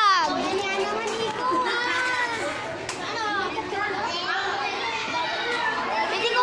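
Several children's voices chattering and calling out over one another, high-pitched and unbroken.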